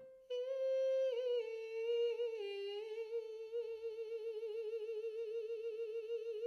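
A woman's voice holding one sung note in light head resonance. The note steps down a little twice, then wavers quickly up and down around the same pitch: a vocal-coaching demonstration of the resonance bouncing just under the soft palate.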